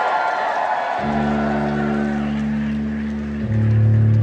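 Crowd cheering, then about a second in an electric guitar starts holding a low sustained note, changing to a stronger, lower note near the end.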